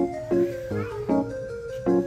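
Background music: a steady run of plucked, guitar-like notes, about two and a half a second.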